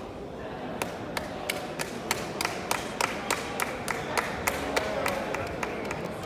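Hand clapping close to the microphone, starting about a second in at about three claps a second, with a few more claps joining. Voices of a crowd murmur underneath, echoing in a large hall.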